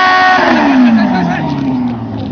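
Motorcycle engine held at a steady high rev. About half a second in, the revs fall away in a long downward slide and settle to a low idle near the end, while the bike is on fire.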